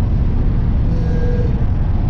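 Steady low rumble of engine and road noise heard from inside the cab of a van driving at road speed.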